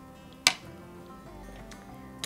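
Background music with held notes, and one sharp clink about half a second in: a metal spoon striking the slaw bowl as slaw is scooped out.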